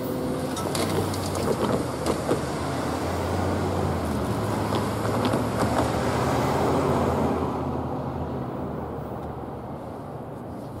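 Pickup trucks driving over a railroad grade crossing, tyres knocking over the rails a couple of times early on, then a closer truck passing loudest about six to seven seconds in and fading away.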